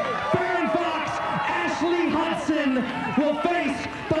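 A man's voice speaking, with no sound other than speech standing out.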